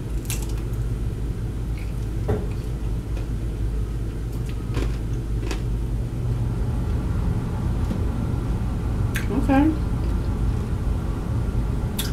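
Close-up eating sounds of a sauce-dipped fried chicken strip being bitten and chewed: a few sharp crunches spread a couple of seconds apart, over a steady low hum.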